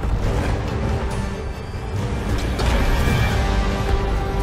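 Loud, tense orchestral film score with held notes, laid over a dense rumble of low film sound effects.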